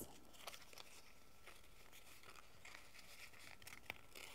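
Near silence, with faint rustles and light ticks of paper being folded and a flap tucked in by hand, and a small click near the end.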